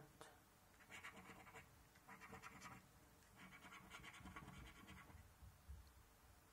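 Faint rasping of a coin scratching the latex coating off a scratchcard, in three short spells, the last one the longest.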